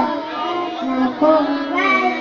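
Young boys chanting a short Quran surah together into microphones in the sing-song talaran style used for memorising, the melody rising and falling from phrase to phrase.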